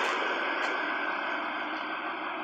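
A steady mechanical hum of a running engine with a faint high whine, slowly getting quieter.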